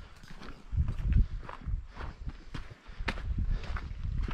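Footsteps of a hiker on a dry dirt and gravel trail, landing at an uneven pace, with a low rumble about a second in.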